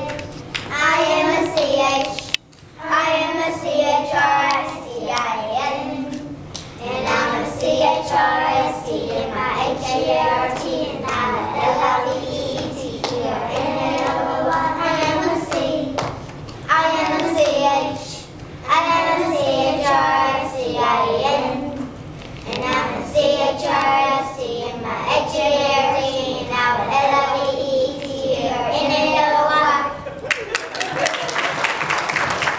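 A group of young children singing a song together, phrase after phrase, with a few brief breaks between lines.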